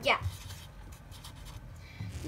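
Sharpie permanent marker drawing a small circle and a letter on paper, the felt tip rubbing and scratching across the sheet in short strokes.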